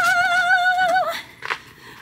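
A Siberian husky's long howl with a wavering pitch, ending about a second in.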